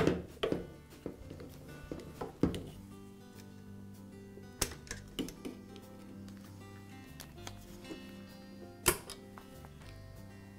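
Quiet background music, broken by a few sharp clicks and knocks from a screwdriver and plastic wire connectors being worked on a paint sprayer's opened pump housing. The loudest clicks come about two and a half, four and a half and nine seconds in.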